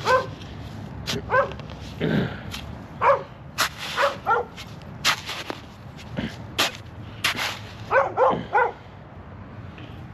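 A shovel digging sandy soil, with a few sharp scrapes and knocks. Short pitched cries, like a dog's yips or whines, come several times between them.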